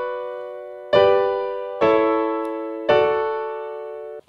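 Grand piano playing block chords in close inversions: a B minor chord in second inversion rings, then three more chords (G, A in second inversion, D in first inversion) are struck about a second apart, each left to ring and fade. The inversions keep the chords close together, so the moving notes form a faint melody inside the accompaniment.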